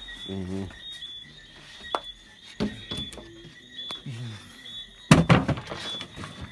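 A plywood panel being handled and set into a car's rear cargo area: a light tap about two seconds in and a loud thump about five seconds in as the board knocks into place. A faint high whine comes and goes underneath.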